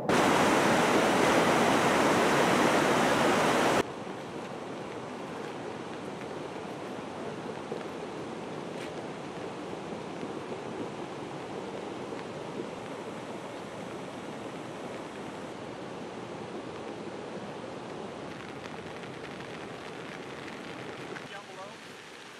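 Steady rushing noise, loud for about the first four seconds, then dropping abruptly to a quieter, even rush that carries on.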